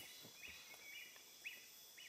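Near silence with faint outdoor ambience and a faint bird chirping about four times, roughly once every half second.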